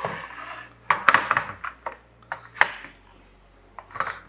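Handling clatter as a 3D printer's power supply and its cable are plugged in and shifted against the printer frame: a scattered run of sharp clicks and light knocks, a cluster about a second in and a few more between two and three seconds.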